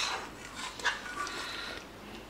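A slotted metal spatula scraping and clinking against stainless steel pots as thick chicken masala is scooped out onto boiled rice. A sharp clink a little under a second in is followed by a brief high ringing tone.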